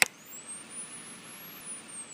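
A sharp click, then a soft, steady hiss with a thin, high whistle that rises and then falls, like a passing jet. It forms a quiet gap between songs in a music mix.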